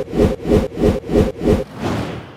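Animated logo intro sound effect: six quick pulses of noise, about three a second, followed near the end by one longer swell.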